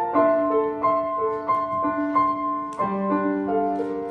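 Upright piano playing a slow prelude: a melody moves over held chords, and a new, lower chord comes in about three seconds in.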